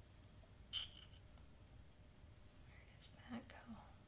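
Near silence with faint handling sounds of small paper cut-out pieces: a brief click about a second in, and a few faint clicks and rustles just after three seconds.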